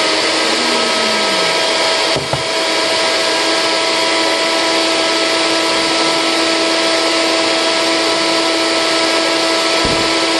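NutriBullet personal blender running steadily, its motor holding one fixed pitch as it grinds a blueberry-banana smoothie of partly frozen, not fully thawed bananas.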